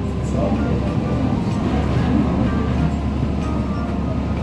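Boat engine running with a steady low rumble, heard from inside the below-waterline viewing cabin of a moving boat, with water rushing along the hull.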